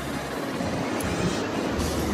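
Wind buffeting a phone's microphone outdoors: a steady, rough rush of noise with a deep, uneven rumble.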